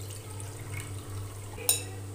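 Starchy rice-rinse water being poured from a glass bowl into a smaller glass bowl, a soft trickle, with one short sharp clink near the end.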